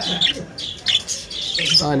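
Caged lovebirds chirping: a busy chatter of many short, high calls overlapping one another.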